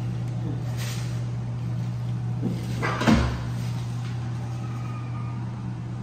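A brown paper towel being crumpled by hand: a brief rustle about a second in. About three seconds in comes a single knock, the loudest moment. A steady low hum runs underneath.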